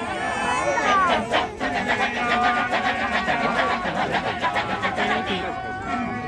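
Kecak chorus of many men chanting together. Held voices at the start and a falling vocal glide about a second in give way to the fast, interlocking rhythmic "cak" chanting.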